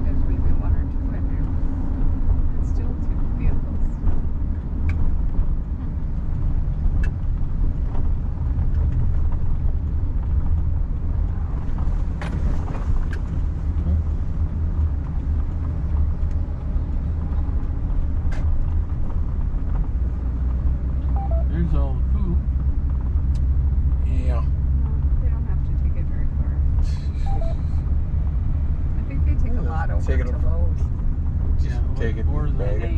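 Car driving along a road: a steady low rumble of engine and tyres.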